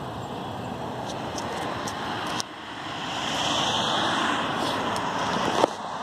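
Steady road traffic noise with a car passing by, swelling from about three seconds in and easing off near the end. A few light clicks sit over it.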